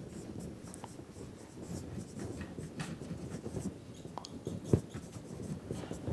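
Dry-erase marker writing on a whiteboard: faint short squeaks and scratches, one for each stroke of the letters, with a single sharper knock a little before the end.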